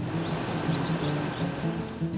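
Background music with steady low tones over the even rushing noise of an outdoor air-conditioning condenser unit's fan running.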